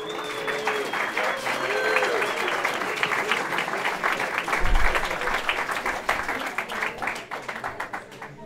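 Audience applauding, the clapping thinning out and fading toward the end, with a low thump about halfway through.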